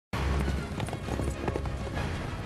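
Film soundtrack music with a horse's hooves clip-clopping, several hoof strikes over the music.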